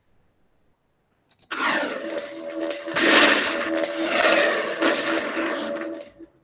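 Opening title sting of a TV science programme: a loud burst of whooshing, crackling sound effects over held low notes, starting about a second and a half in and cutting off at the end.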